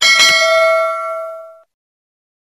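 A single bell ding sound effect, struck once and ringing on a few clear tones that fade out over about a second and a half, as in a subscribe-button notification-bell animation.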